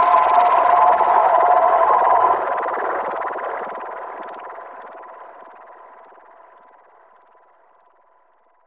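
Closing bars of an experimental neofolk/trip-hop instrumental: a noisy, distorted electronic drone with steady held tones. About two seconds in its high end drops away and it fades out steadily to almost nothing, the end of the track.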